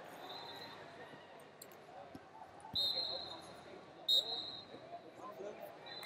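A referee's whistle is blown twice, about a second and a half apart: short, shrill blasts that stop the action. Arena crowd chatter runs underneath.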